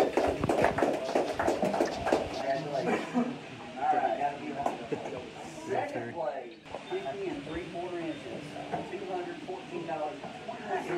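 A small group of people clapping for about two and a half seconds, then indistinct talking among the crowd in a room.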